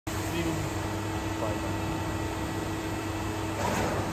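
Steady machine hum with a constant tone, the idling blanking machine and workshop around it, with faint voices in the background.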